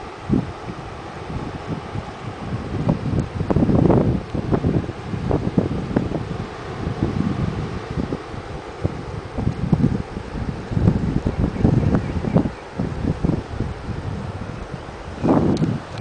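Wind buffeting the microphone in irregular low rumbling gusts, strongest about four seconds in and again near the end, over a steady hiss of distant surf.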